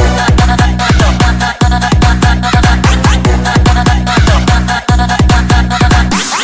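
Loud DJ breakbeat dance music with heavy bass: the full bass comes in at the start, and fast bass hits, several a second, each falling in pitch, pound under a repeating synth line. The bass drops out for an instant twice.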